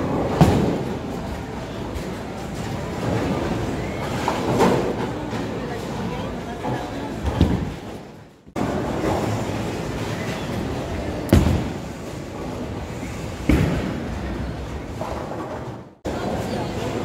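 Bowling alley noise: a handful of sharp thuds and crashes from bowling balls and pins over a steady hubbub of voices.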